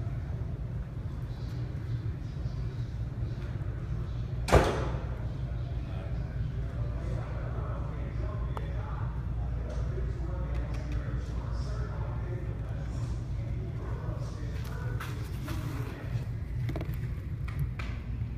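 One sharp click about four and a half seconds in, a putter striking a golf ball, over the steady low rumble of a large indoor hall with faint voices in the background.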